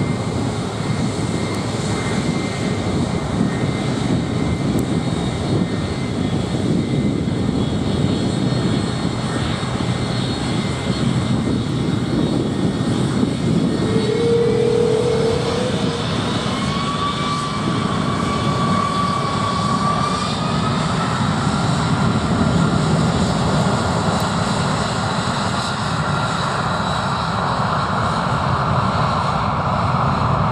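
Boeing 747-400 freighter's four jet engines running as it rolls along the runway: a steady roar with an engine whine that rises in pitch a little past halfway.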